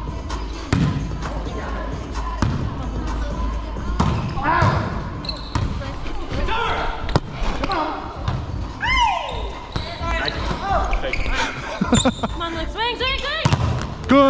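Volleyball being struck and bouncing on a hardwood gym floor in a series of sharp hits during a rally, with players calling out, all echoing in a large gym hall.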